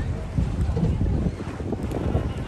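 Wind buffeting the microphone aboard a moving boat, an uneven low rumble that swells and dips, with the wash of water around the hull.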